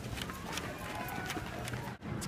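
Running footsteps on asphalt, sharp regular footfalls about three a second, heard from the runner carrying the camera.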